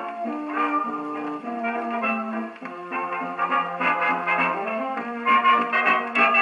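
A 1920s jazz dance-band 78 rpm shellac record playing on an acoustic gramophone: trumpets, trombones and clarinets in an instrumental ensemble passage. The sound is thin and boxy, with no deep bass and no top, as is typical of a soundbox-and-horn machine.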